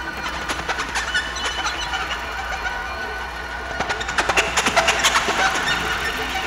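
Experimental electronic music played live: a steady low drone under thin high held tones and crackling, clicking noise, the clicking growing denser and louder about four seconds in.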